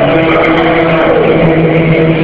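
Men's voices chanting loudly together in long held notes, the recording overloaded and distorted.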